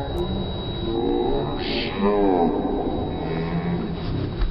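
Slowed-down audio of human voices, deep and drawn out, with a long call that rises and falls about two seconds in and a short hiss just before it. A thin steady high tone runs underneath.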